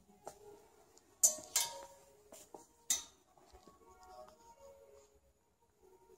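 Clothes hangers clicking and clinking against a metal garment rail as they are pushed along and one is lifted off, in a handful of sharp knocks, the loudest a little over a second in and again near three seconds. Faint music plays in the background.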